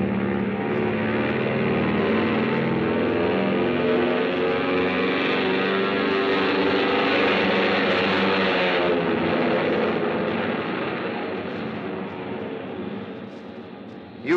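Airplane engine sound effect from a radio studio, running steadily, then fading down over the last few seconds.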